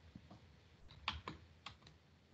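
Faint clicking at a computer: about six short, sharp clicks, mostly in the second half.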